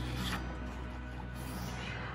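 Soft background music with steady low notes, under the papery rustle of a picture-book page being turned.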